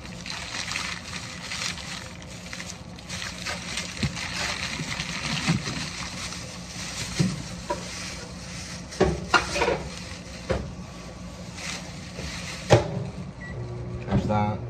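Microwave oven running while it heats food: a steady hum with a fan's hiss, with a few knocks of dishes. The microwave stops suddenly with a click near the end.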